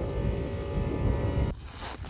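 An engine running steadily, with wind rumbling on the microphone; it cuts off abruptly about one and a half seconds in.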